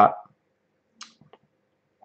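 A few faint, short clicks about a second in, in an otherwise near-silent small room, after the end of a spoken word.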